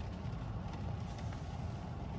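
Steady low hum of a parked car's cabin, with a few faint ticks.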